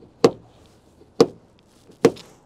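Exterior door handle of a Geely Monjaro pulled and let snap back twice, about a second apart, each time a sharp clack with a short metallic ring. How much the handle rings is taken as a sign of how well the door is sound-insulated.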